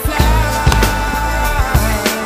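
Background music with a drum beat and a held melody line.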